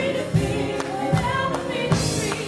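A gospel worship song sung live by a group of women on microphones, with keyboard accompaniment over a steady beat.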